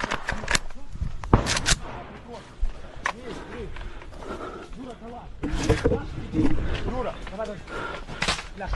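Low, indistinct men's voices in the middle of the stretch, with scattered sharp knocks and rustles. The knocks are quieter than nearby shouting.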